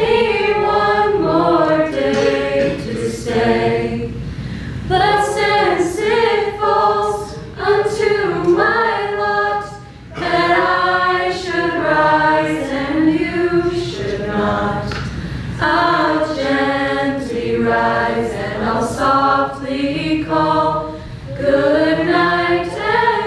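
A small choir of young voices singing a cappella, in sung phrases with a brief breath pause about ten seconds in.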